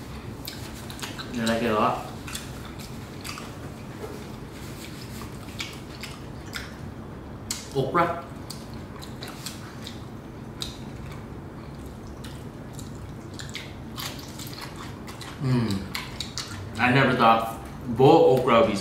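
People eating a seafood boil with their fingers: chewing and many small, sharp clicks of food and tableware, over a steady low room hum. Short bits of voice come about a second and a half in, about halfway, and again near the end.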